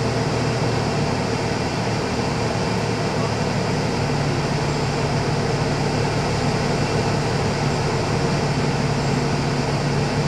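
Vehicle engine running steadily at low speed, heard from inside the cab as a continuous low drone with road and cabin noise, no changes or sudden sounds.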